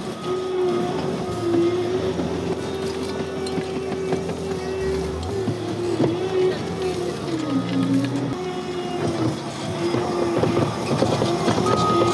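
Compact track loader engine running at high revs as a steady drone, its pitch sagging briefly a few times, most deeply about two-thirds of the way through before it picks up again.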